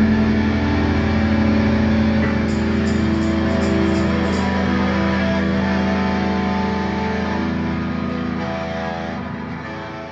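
Music led by electric guitar: long held notes that shift a few times and ring on, the sound slowly dying away.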